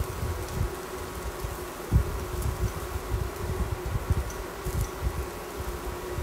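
Portable induction hob buzzing steadily under a pan of frying carrot fritters, a constant mid-pitched hum over a light sizzle. A single knock about two seconds in, like a utensil against the pan.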